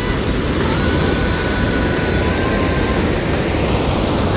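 Loud, steady rush of whitewater tumbling down a rocky creek cascade just below.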